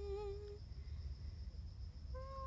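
A woman humming a hymn tune: one held note with a slight waver at the start, then a pause in the tune.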